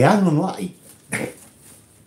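A man's voice making a drawn-out, wordless exclamation with a rising and falling pitch, followed by a short second sound a little over a second in.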